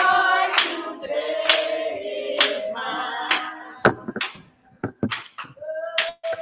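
A group of women singing a church song together in long held notes, with hand claps on the beat about once a second.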